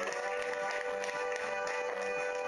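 Music playing: a long held note over a steady beat.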